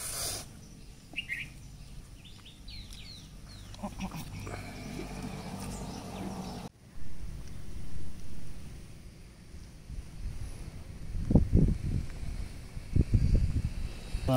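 A few short bird chirps in the first seconds. After a sudden cut, several loud, low, rumbling bursts near the end.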